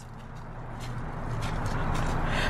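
Road traffic on a highway: a vehicle's tyre and engine noise with a low rumble, growing steadily louder as it approaches.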